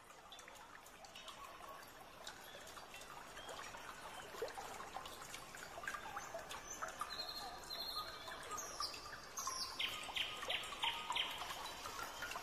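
Nature ambience fading in: birds chirping over a trickle of running water, growing steadily louder, with quick repeated chirps near the end.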